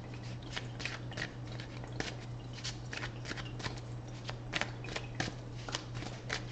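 A deck of tarot cards being shuffled by hand: an irregular run of short card slaps, about three a second, over a steady low hum.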